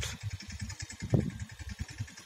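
Low, uneven background rumble during a pause in speech, with a brief faint sound about a second in.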